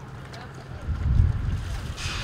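Wind buffeting the microphone outdoors: a low rumble that swells to its loudest about a second in, then eases.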